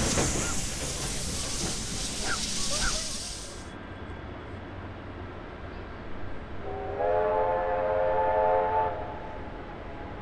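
Hiss and rumble of a steam train just gone past, fading and then cut off suddenly a few seconds in. Near the end, a steam locomotive whistle sounds one blast of about two seconds, several notes together.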